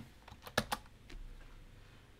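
Computer keyboard keystrokes: a quick run of about four key presses about half a second in, typing a transaction code into the command field.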